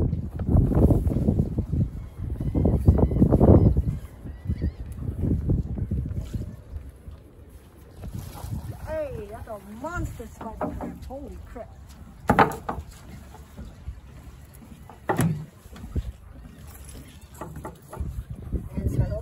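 Wind gusting hard on the microphone for the first few seconds, then easing to a lighter rush. Later come two sharp knocks, the second as a crab trap is set down on the wooden pier deck.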